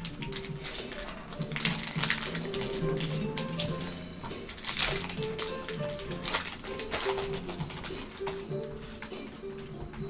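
Background music with steady notes, over the crinkling and tearing of foil trading-card pack wrappers and cards being handled, with many short, sharp rustles. The loudest rustle comes about five seconds in.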